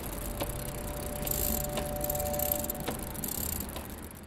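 A bicycle being wheeled along: a light rattle and a few separate clicks over a steady hiss, with a faint steady squeak in the middle that stops with a click about three seconds in.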